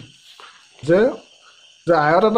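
A pause in a man's speech, broken by one short voiced syllable about a second in, over a steady faint high-pitched background sound.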